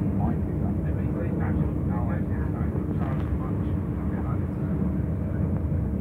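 Steady rumble of a moving passenger train heard from inside the carriage, with a faint steady hum over it.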